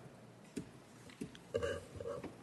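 Faint room tone with a soft knock about half a second in and a short, low, voice-like sound from a person near the end.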